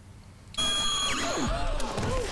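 Electronic sci-fi sound effects from a TV drama soundtrack: Toclafane laser fire, starting suddenly about half a second in. A high steady tone is joined by swooping, wavering electronic glides and a deep falling sweep, under the dramatic score.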